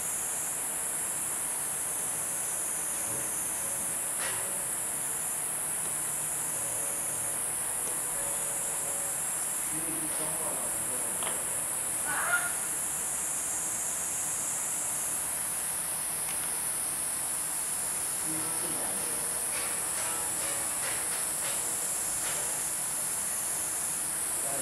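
A steady, high-pitched insect chorus that swells and eases, with faint background voices and one brief sharp sound about twelve seconds in.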